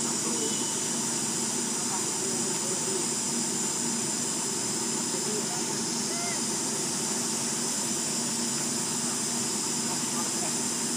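Steady outdoor background: a constant high-pitched hiss over a low even rumble, with a few faint short chirps.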